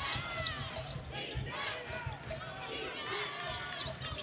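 Basketball being dribbled on a hardwood court during live play, with sneakers squeaking on the floor.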